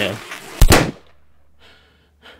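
A single loud gunshot bang a little over half a second in, dying away within about half a second.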